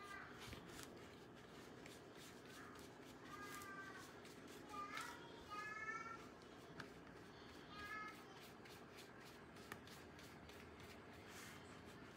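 Near silence: room tone, with a few faint, high-pitched, drawn-out calls in the background during the first eight seconds or so.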